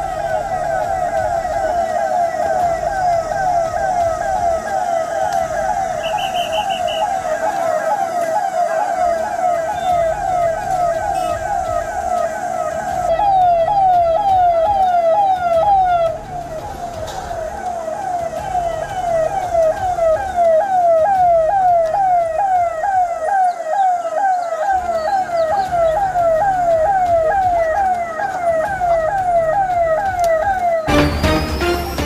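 Police-style siren sounding throughout, a fast repeating falling wail of about two to three sweeps a second.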